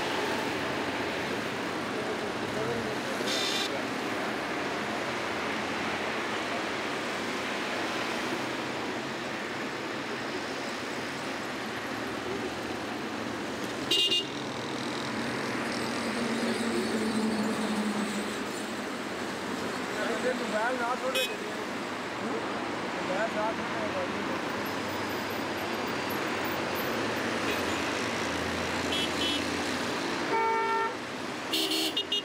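Steady road traffic on a busy multi-lane road, with car and motorcycle engines and tyre noise, and vehicle horns tooting now and then, one short sharp toot about halfway through.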